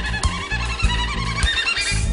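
Instrumental song intro: a violin and harmonica melody over bass notes and drum hits.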